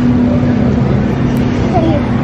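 Steady low hum of a supermarket's background machinery, with faint voices of other shoppers.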